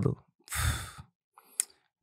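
A man sighing: one breathy exhale about half a second in, lasting about half a second, followed by a single short click.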